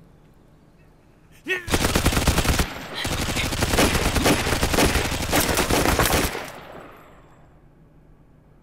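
Several guns, a pistol among them, fired rapidly and without letting up for about four and a half seconds, with a brief lull about a second in, then the shots ring away.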